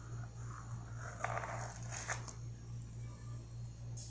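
A knife cutting through a set block of homemade glycerin-soap toilet cleaner in a foil-lined pan, with a short scraping rasp about a second in and a few light clicks soon after, over a steady low hum.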